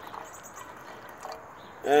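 Quiet outdoor background with faint high chirping of insects and birds. A man's voice starts near the end.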